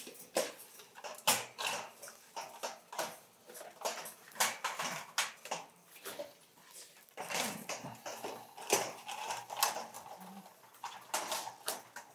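Racing pigeons pecking grit from their feed bowls: irregular light taps and clicks on the bowls.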